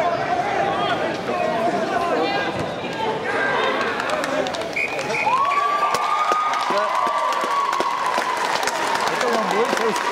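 Sideline crowd talking and cheering. About five seconds in come two short high pips, then a long single-pitched hooter tone that rises quickly and sags slowly for about four seconds: the full-time signal.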